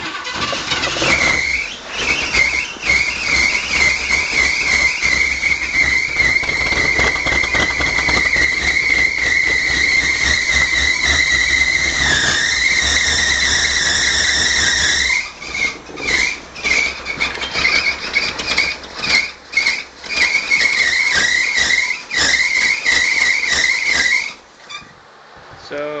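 Toyota FJ40 Land Cruiser engine running with a loud, wavering high squeal from the front of the engine. The squeal is steady for about the first fifteen seconds, then comes and goes in choppy spells until it drops away near the end. The owner doesn't know if it's the belts and notes a pulley that seems loose.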